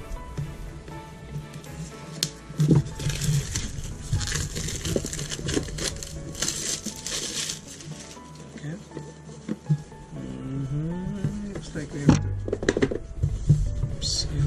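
Scissors cutting open a cardboard product box, then a few seconds of cardboard packaging rustling and scraping with scattered clicks as the box is handled, over steady background music.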